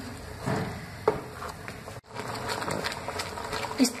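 Wooden spatula stirring and mashing thick, cooked moong dal in a kadai: soft scraping and squelching, with a brief knock about a second in.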